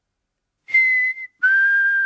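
A person whistling through pursed lips: two clear notes, a short higher one and then a longer, steady lower one, starting about two-thirds of a second in.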